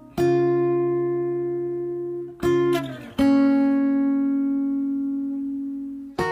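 Unplugged instrumental on guitar: chords struck and left to ring and slowly fade, one at the start, a quick pair about two and a half seconds in, then another that rings on to the end.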